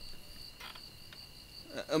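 Crickets chirping in a steady, high-pitched trill, with a few faint crackles from the burning wood fire.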